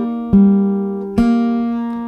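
Acoustic guitar with a capo at the third fret, fingerpicked slowly: two notes plucked about a second apart, each left ringing and fading.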